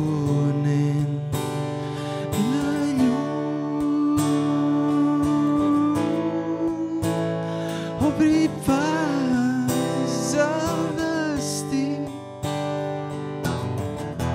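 A man singing live to his own strummed steel-string acoustic guitar, holding long notes and sliding between them over steady chords.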